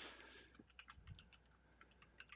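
Faint computer keyboard typing: a quick, irregular run of key clicks as a word is typed, after a brief soft hiss at the start.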